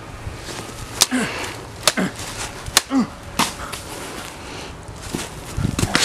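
Prop lightsaber blades clacking together in a staged duel, about four sharp knocks a second or less apart, several followed by a short grunt of effort.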